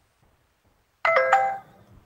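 A short two-note electronic notification chime from the computer, ringing about a second in and fading within half a second.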